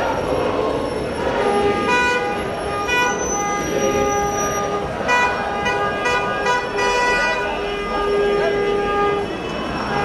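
Car horns honking in a series of held blasts over the steady noise of a crowd's voices. The horns start about a second and a half in, and some overlap.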